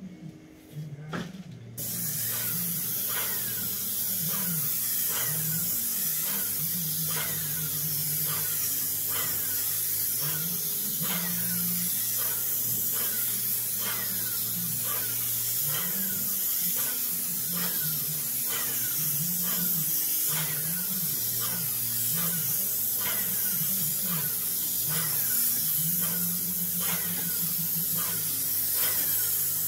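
Airless paint spray gun with a Graco tip atomising roof-membrane coating under high pressure: a steady loud hiss that starts abruptly about two seconds in as the trigger is pulled and runs on without a break.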